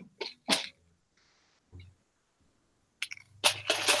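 A man sneezing once, near the end, loud and sudden after a short build-up.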